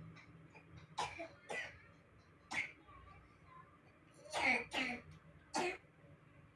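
A person coughing six times: a cough about a second in, another just after, one more a second later, then a quick pair and a last cough near the end.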